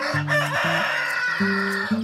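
Rooster crowing: one long cock-a-doodle-doo lasting nearly two seconds, over background music.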